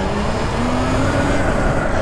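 Steady wind and road noise on the microphone while riding an electric motorcycle, with a faint electric-motor whine rising slightly in pitch.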